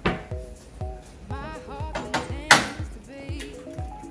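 Background music with a steady beat; about two and a half seconds in, one sharp crack as an egg is broken open over a frying pan.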